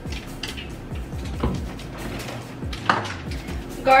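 Spice jars and their lids knocking and clinking as they are handled, taken from a cabinet and opened, with scattered sharp knocks; the loudest comes about three seconds in.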